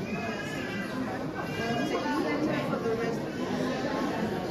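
Overlapping conversation of several people, a steady hubbub of voices with no single speaker standing out.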